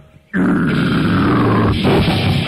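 The grindcore band stops dead, then a deep guttural growled vocal is held alone for about a second and a half, its pitch slowly falling. The full band comes back in near the end.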